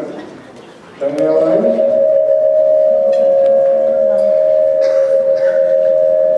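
Public-address microphone feedback: a loud, steady tone at one pitch that starts suddenly about a second in and holds without changing, with faint voices underneath.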